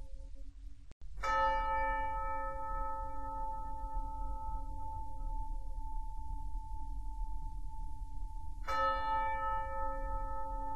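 A bell-like tone struck twice, about seven and a half seconds apart, each ringing on at length with several overtones, over a steady low hum.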